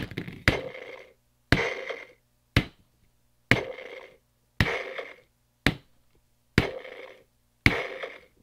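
Plastic feet of an Arlo animated talking dinosaur toy knocking on a table about once a second as it is pressed down, most knocks followed by the toy's short electronic stomping sound effect; a few presses give only the knock, since the stomp sound does not fire every time.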